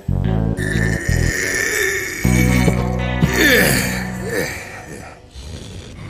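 Cartoon soundtrack music with comic sound effects: a few short low notes in the first second, then a longer low sound with sliding tones and a hiss in the middle, dying away near the end.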